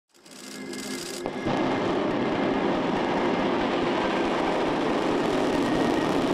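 Long March-2C rocket's first-stage engines firing at liftoff: a dense, steady rush of engine noise that builds up over the first second and a half and then holds loud and even.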